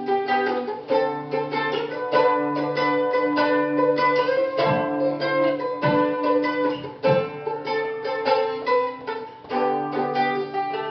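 Plucked acoustic string instrument playing the instrumental opening of a song, a steady run of picked notes.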